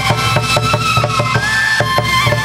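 Chầu văn ritual music without singing: a wooden clapper beat about four times a second under a held melody, which slides up in pitch about three-quarters of the way through.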